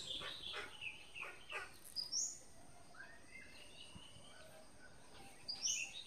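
Small birds chirping faintly in the background: a run of quick chirps in the first second and a half, then two sharp high calls, about two seconds in and near the end.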